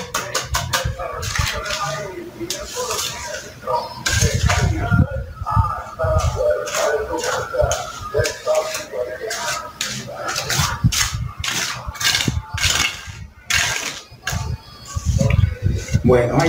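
Steel mason's trowel scraping and tapping over a freshly laid, wet cement patch on a concrete floor in quick repeated strokes, with a man's voice talking throughout.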